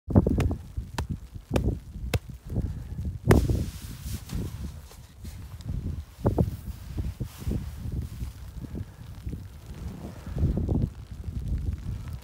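A gloved hand strikes a shovel blade lying on top of an isolated snow column in an extended column test: a run of sharp taps a little over half a second apart, the loudest about three seconds in. The column fractures and propagates on a buried weak layer of loose, sugary faceted snow. After that come softer, irregular thuds and scraping as the snow blocks are handled.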